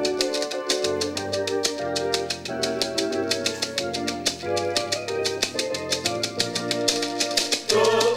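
An a cappella choir singing sustained chords over a quick, steady shaking rhythm from a bead-netted gourd rattle (axatse). Near the end a voice with a wavering melody comes in above the chords.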